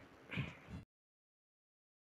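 Near silence: a faint, brief trailing sound in the first second, then the audio cuts to dead silence.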